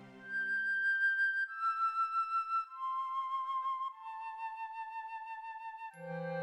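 Slow relaxation music: a solo flute plays four long held notes, each a step lower than the last, with a gentle vibrato, as a lower accompaniment fades out at the start.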